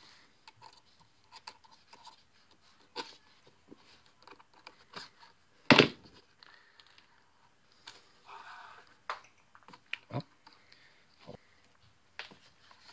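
Hand-stitching leather: needles pushed through stitch holes and thread drawn through, heard as scattered faint clicks and creaks, with a longer rasp a little past eight seconds in.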